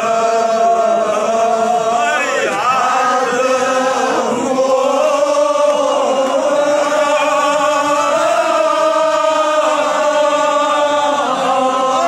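A large group of men chanting together in unison, a devotional chant sung in long, drawn-out notes that bend slowly in pitch, with no break.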